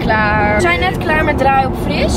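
A person's voice in a few short, high-pitched stretches that the recogniser did not take as words, over the steady low rumble of a car in motion heard from inside the cabin.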